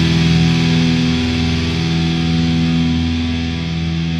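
Black metal recording: distorted electric guitar chords held and ringing out steadily, with no drum hits.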